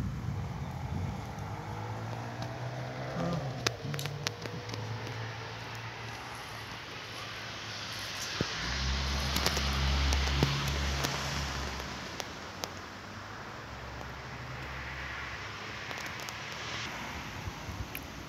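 Outdoor street ambience with traffic passing; one vehicle swells and fades about halfway through.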